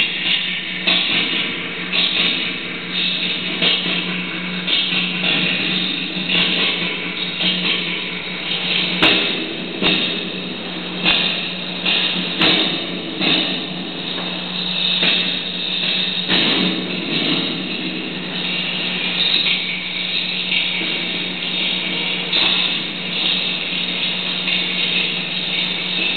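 Experimental noise music from electronics and effects pedals played through a small amplifier: a dense, continuous wash of distorted noise over a steady low hum, broken by irregular sharp crackling hits about once a second.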